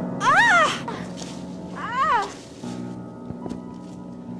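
Two short meow-like wails, each rising then falling in pitch, about a second and a half apart, over steady background music.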